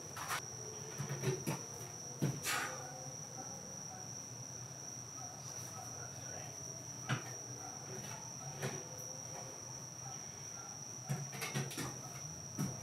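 A steady, unbroken high-pitched trill of night insects coming through the open garage door, with a few faint knocks and barefoot footfalls on the concrete floor.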